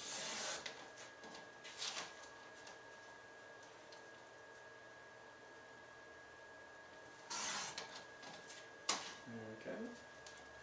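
Sliding paper trimmer cutting cardstock: two short scraping swishes as the blade carriage is pushed along the rail, one at the start and one about seven seconds in. Light clicks in between as the trimmer and card are handled.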